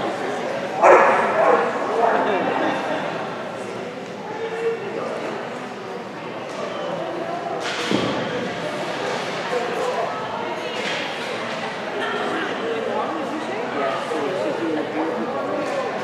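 A dog barking, loudest about a second in, over a murmur of people's voices in a large indoor hall.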